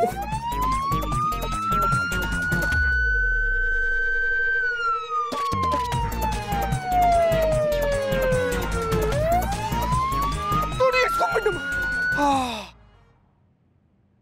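Electronic siren alarm wailing in slow sweeps, rising over about two seconds, holding, then falling over several seconds before rising again, with a fast pulsing beat underneath. It cuts off suddenly near the end.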